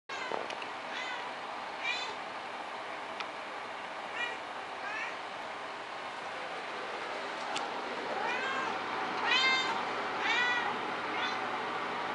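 Cats meowing: a string of about ten short, high-pitched mews, scattered at first, then louder and coming closer together over the last four seconds.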